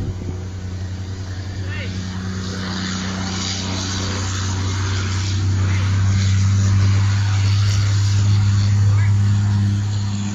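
A steady low engine hum that grows louder through the middle and eases off near the end.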